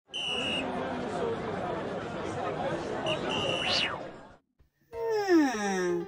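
Crowd babble of many overlapping voices, like a stadium crowd, with two short high steady whistle-like tones in it, the second sweeping quickly upward at its end. After a brief silence, a long tone rich in overtones slides steeply downward near the end.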